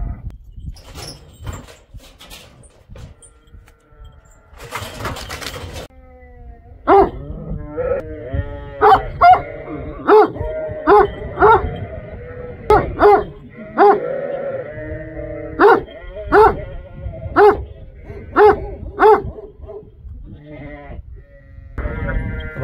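Kangal guard dogs barking on alert, a run of loud, deep barks roughly once a second that starts about seven seconds in and stops near the end, with sheep bleating between the barks.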